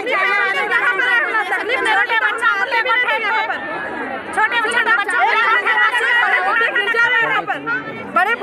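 Speech only: people talking over one another, with crowd chatter behind.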